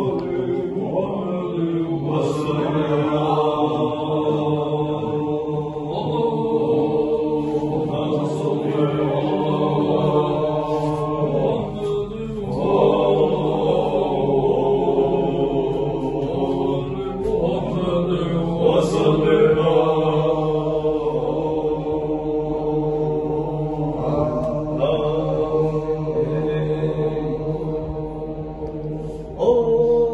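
Men's voices chanting an Islamic zikr (dhikr) together, in long held phrases that break briefly every five or six seconds.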